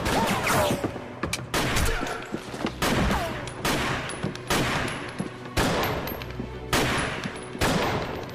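A film gunfight: pistol shots fired every half-second to a second, each echoing with a long reverberant tail in a large hall. Two falling whines follow shots about half a second and three seconds in.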